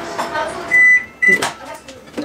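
Microwave oven beeping: one longer high beep about two-thirds of a second in, then a short second beep, followed by a brief clatter.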